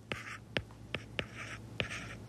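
Stylus writing on a tablet screen: short scratchy strokes with a run of sharp taps as figures are written out.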